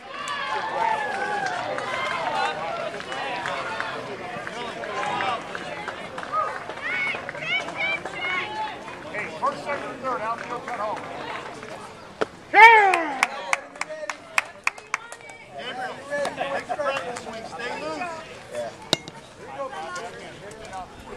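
Background voices of young players and spectators chattering and calling out at a youth baseball game, with one loud drawn-out call falling in pitch about halfway through, followed by a few sharp clicks.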